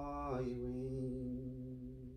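A priest's voice chanting slow, long-held notes, stepping down in pitch about half a second in and fading near the end.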